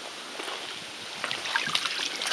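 Light splashing and trickling of shallow water around a carp lying at the water's edge, with small crackly splashes picking up in the second half.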